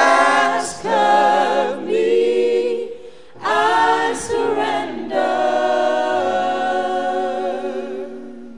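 Voices singing a slow worship song in long held phrases, with a brief dip a little after three seconds before the singing picks up again.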